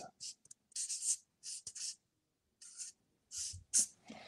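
Marker writing on paper flip-chart sheets: a run of short, high strokes with a short pause about halfway through.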